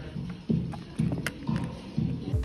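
Footsteps on a wooden floor, about two steps a second.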